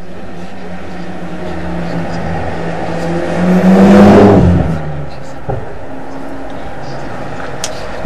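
A motor vehicle passing by, swelling to its loudest about four seconds in and then fading, over a steady low hum.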